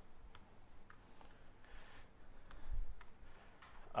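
Faint, scattered keystroke clicks from typing on a computer keyboard, with a soft low thump about three seconds in.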